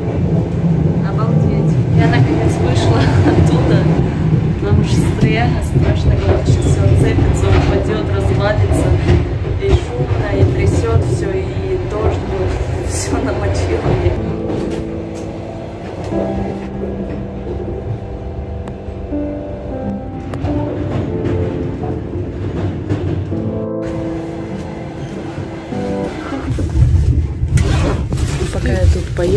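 Passenger train running, a loud low rumble heard from inside the vestibule between carriages, with music playing that stands out more in the second half.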